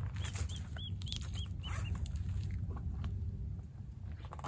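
An animal calling: a run of about eight short, high chirps, roughly four a second, over the first two seconds, above a steady low rumble.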